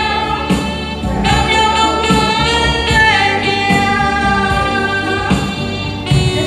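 A woman singing into a microphone over a karaoke backing track, holding one long note from about a second in to near the end, with a drop in pitch about halfway through.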